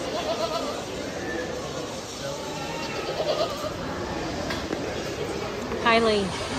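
Angora goats bleating, with one loud call near the end that falls in pitch, over people talking in the background.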